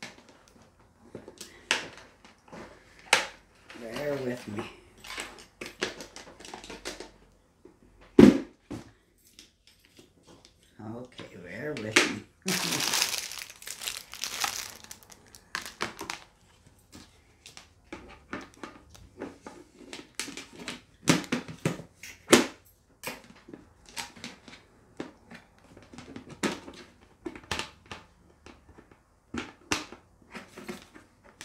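Plastic packaging crinkling and tearing as a boxed plastic portable washing machine is unpacked, with many knocks and clatters of its plastic parts being handled. One sharp knock comes about eight seconds in, and a longer stretch of crinkling and tearing comes about halfway through.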